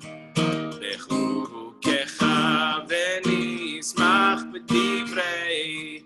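Acoustic guitar strummed, with a voice singing a melody over it in short phrases.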